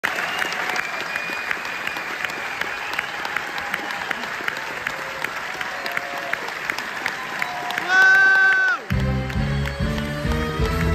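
A theatre audience applauding. About eight seconds in, a loud held chord sounds for about a second, then bass-heavy music with a beat starts up for the curtain call.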